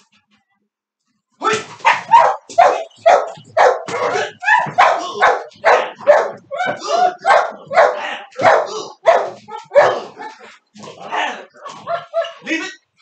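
A dog barking repeatedly and loudly, about two barks a second, starting about a second and a half in.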